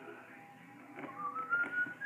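A faint, high whistle-like tone that begins about a second in, rises in pitch and then holds steady.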